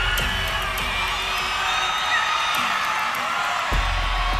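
Arena concert crowd screaming, whistling and cheering over music, with a deep bass note struck near the end and held.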